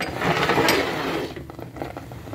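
A spoon scraping through thick, freshly cooked farina against the side of a metal pot, a rasping scrape with a click, fading out after about a second.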